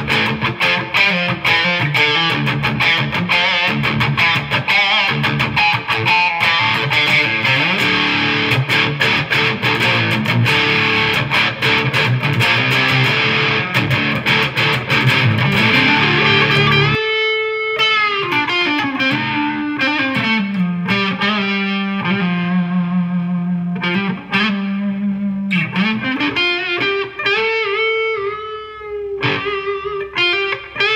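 Daisy Rock Elite Venus semi-hollow electric guitar played with overdrive distortion, through a StonegateFx Obsessive Drive pedal at the start: fast distorted riffing with many quickly picked strokes, then, after an abrupt change a little past halfway, slower single-note lead lines with string bends and held notes.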